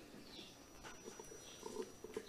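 Pause in speech: faint room tone with a thin, steady high-pitched whine and a few soft, indistinct sounds near the end.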